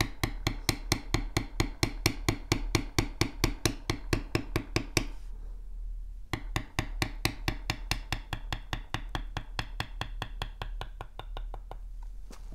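Mallet tapping a steel leather beveler in quick, even strikes, about six or seven a second, as the tool is walked along a cut line in leather over a stone slab. There is a pause of about a second in the middle, then the tapping resumes until just before the end.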